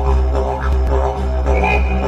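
Didgeridoo music: a steady low drone with rich overtones, pulsing rhythmically.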